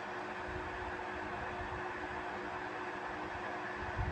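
Steady hiss with a faint, steady hum: room tone.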